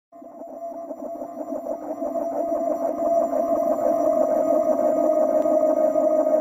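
Synthesized electronic drone for a channel intro: one steady held tone with a flickering, buzzy texture. It fades in from silence over the first three seconds or so, then holds.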